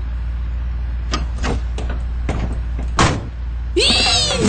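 Truck engine idling with a steady low rumble, broken by several sharp knocks, the loudest about three seconds in. A swooping sound comes in just before the end.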